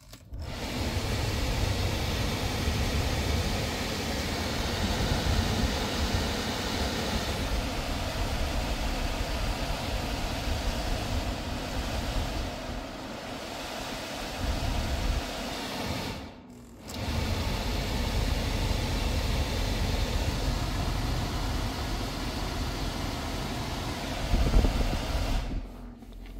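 Hyundai Sonata's climate-control blower fan running hard, a steady rush of air with a low rumble underneath. It drops out briefly about two-thirds of the way through, then comes back.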